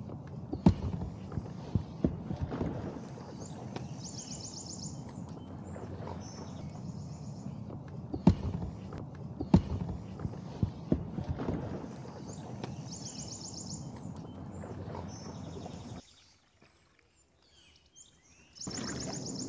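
Scattered knocks and bumps of a coroplast kayak hull and paddle against a wooden jetty as a person gets in and out of the boat, over a steady low outdoor rumble. A bird's short high trill repeats several times. About two seconds before the end it drops to near silence.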